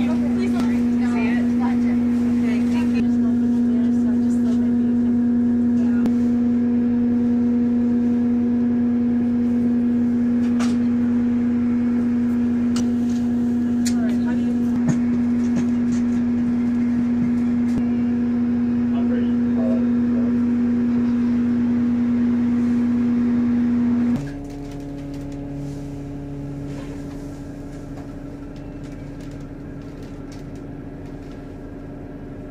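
Loud steady hum from the machinery of a GO Transit bus, heard inside the bus while it sits at the stop. About 24 seconds in the hum cuts off suddenly, leaving a quieter, lower hum.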